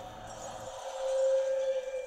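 Anime battle sound effect of a magic attack: a whooshing swell over a held note, building to a peak a little past halfway and then easing off.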